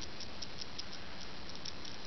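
Steady hiss with a few faint, light clicks of small neodymium magnet balls shifting as a ball-magnet shape is squeezed in the hands.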